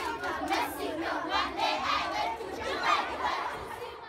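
A crowd of young children singing and shouting together, fading out near the end.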